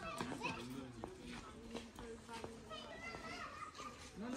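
Background chatter of several people, children's voices among them, talking and calling out at a distance, with a few light taps.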